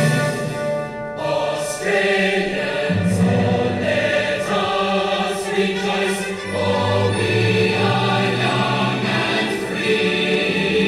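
Background music of a choir singing slow, held chords over a steady low bass, the chords changing every few seconds.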